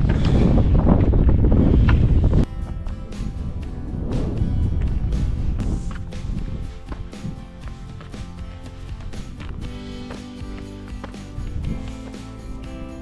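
Strong wind buffeting the action camera's microphone for about the first two seconds, cutting off suddenly into background music with steady sustained notes for the rest.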